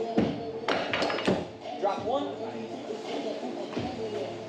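Thrown hatchets striking wooden axe-throwing targets: several sharp knocks within the first second and a half.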